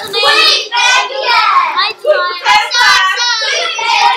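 A child singing in high, sing-song phrases close to the microphone, with other children's voices around.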